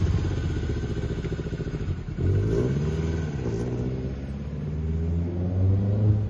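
Lancia Fulvia 1.3 Coupé's narrow-angle V4 engine pulling away and fading as the car drives off. The revs drop about two seconds in, pick up again and rise once more near the end.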